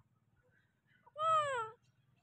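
A single meow-like animal cry, about half a second long, falling gently in pitch, starting about a second in.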